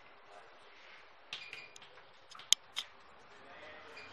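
Chalk writing on a blackboard: a few short scratches and taps starting about a second in, with the sharpest tap about two and a half seconds in.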